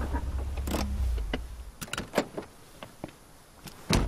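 Low rumble of a vintage convertible car's engine and tyres dying away as the car comes to a stop about a second in, followed by scattered clicks and knocks and a sharp thump near the end.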